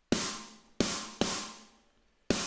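Sampled snare drum from EZdrummer, processed through EZmix's snare preset and played back on its own. Three sharp hits, one at the start and two close together near the middle, each ringing out briefly.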